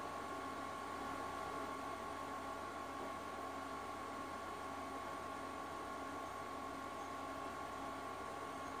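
Quiet, steady hiss with a thin, steady high tone and no distinct events.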